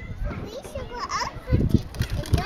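A young child's brief high-pitched vocal sounds, with a low, irregular rumble starting about halfway through.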